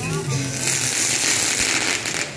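Ground fountain firework hissing and crackling as it sprays sparks, a steady high hiss that builds up about half a second in.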